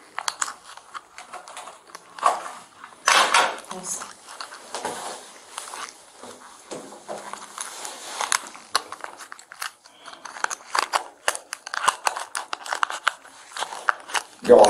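Nitrile-gloved hands handling a small clear plastic packet right at the microphone: irregular crinkling and clicking of plastic and glove rubbing, loudest about three seconds in.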